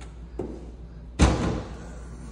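Kitchen cabinet door being swung and shut: a faint click, then one sharp knock a little over a second in as the door closes against the cabinet frame.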